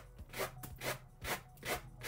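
Sanding block rubbed in quick repeated strokes along the edge of a wooden box, tearing off the overhanging decoupage rice paper; about two to three scratchy strokes a second.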